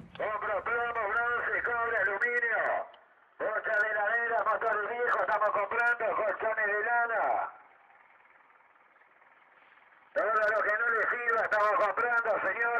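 A man's recorded voice, thin-sounding as through a loudspeaker or phone, speaking in three stretches with a pause of a few seconds before the last.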